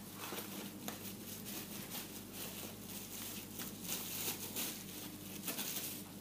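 Faint rustling and a few light clicks as a leather belt is drawn out of its plastic wrapper and handled.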